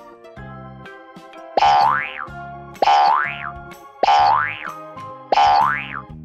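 Cartoon boing sound effect, played four times at an even pace about a second and a quarter apart, each a loud springy rise in pitch, over background children's music.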